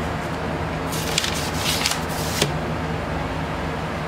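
Vinyl record in its paper inner sleeve slid into the cardboard album jacket: a rustling swish lasting about a second and a half, ending in a light tap. A steady hum from room fans runs underneath.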